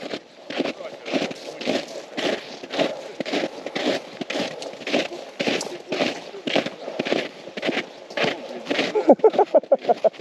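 Boots crunching on snow-covered lake ice in a brisk walk, about two steps a second, with short voice-like sounds near the end.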